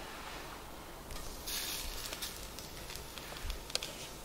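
A breaded mullet roe laid into smoking-hot lard, sizzling from about a second and a half in, with a few sharp pops near the end. The sizzle is modest because the roe holds little water.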